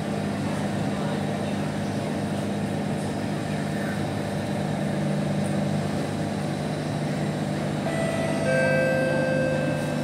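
Steady low hum of a stationary C151 train car's onboard equipment and ventilation, with several steady tones coming in about eight seconds in.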